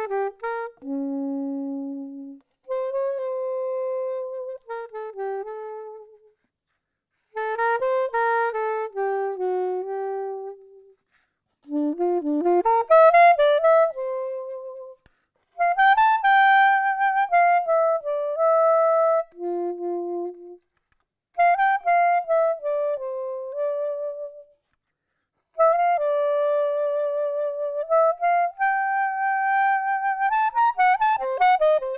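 Solo soprano saxophone playing a slow melody of long held notes, some with vibrato, in phrases broken by short pauses.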